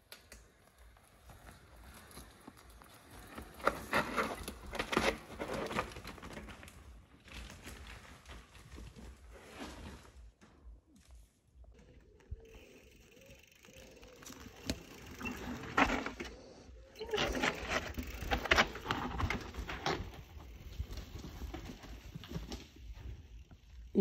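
Mountain bike riding over a dirt and rock forest trail: tyres crunching over the ground and the bike clattering over bumps, coming in irregular bursts as a rider passes close, twice.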